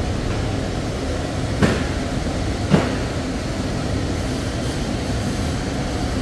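Steady low background rumble, with two short knocks, one about one and a half seconds in and one near three seconds.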